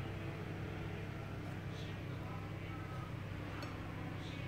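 A steady low machine hum, with one faint click near the end.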